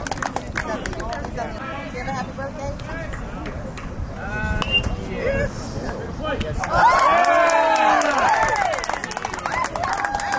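Baseball crowd and players talking and calling out. About seven seconds in, a louder burst of many voices shouts at once, cheering the out at first base.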